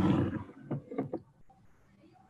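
A person coughing: one rough cough right at the start, then a few short, weaker ones within the next second.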